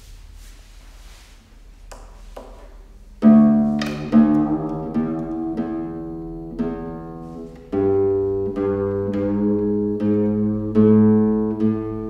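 Nylon-string classical guitar starting a piece: a few seconds of quiet with small clicks, then about three seconds in a loud chord that rings out, followed by further ringing chords and a second strong chord about eight seconds in.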